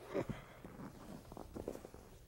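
A short breathy laugh, then faint shuffling and scuffing of bodies on a foam wrestling mat as two men get up off it.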